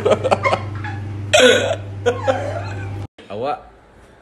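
A person's voice talking and laughing over a steady low hum, with a loud outburst about a second and a half in. The sound cuts off abruptly just after three seconds.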